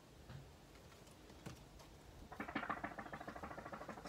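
Faint scratches of a felt-tip marker on a card. About two seconds in, a fast, crackly run of fine ticks as a bundle of plastic polymer banknotes is handled and flicked through.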